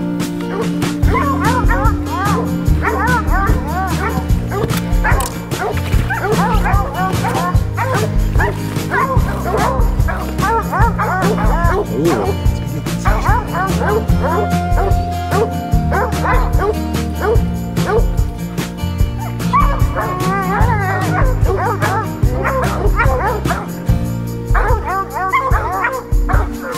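Hunting hounds barking and baying in many short, rising-and-falling calls, over background music with a steady bass line.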